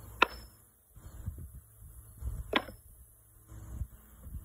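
Thrown metal washers landing on a wooden washer-toss board: two sharp clanks, each with a short metallic ring, a little over two seconds apart.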